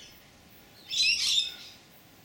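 A bird chirping: a short burst of high, wavering chirps about a second in.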